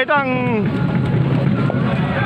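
A man's voice for about half a second, then steady open-air stadium ambience: a low rumble with faint distant voices.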